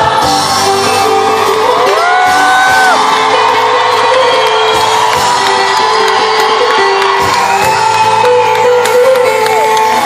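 Live Persian pop music played by a band with orchestral strings, with the audience shouting and whooping over it.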